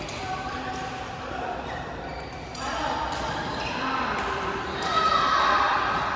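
Badminton rackets striking a shuttlecock in rallies, sharp hits about a second apart, ringing in a large hall over players' voices.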